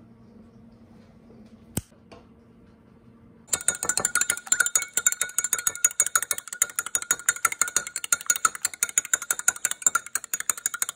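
A fork beating eggs in a glass Pyrex measuring cup: a rapid, steady run of clinks against the glass that starts about three and a half seconds in. Before it, one single sharp knock.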